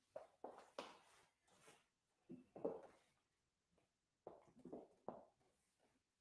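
Faint shuffling, rustling and light knocks of a person stepping to a bench and sitting down, in three short irregular clusters.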